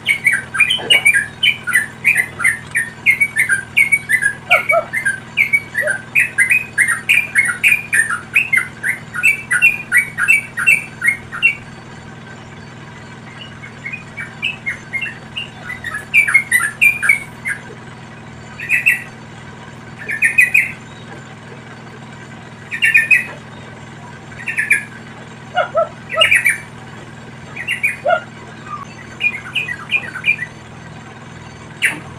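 Yellow-vented bulbuls (trucukan) calling: a fast run of short notes for about the first twelve seconds, then a few short bursts of notes every couple of seconds.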